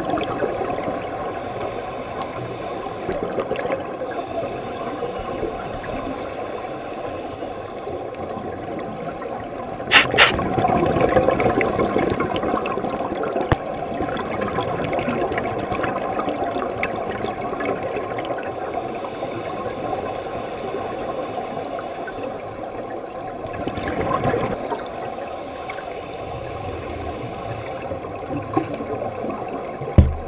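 Underwater ambience of a scuba dive: steady bubbling and hiss from divers' exhaled air, with two sharp knocks about ten seconds in.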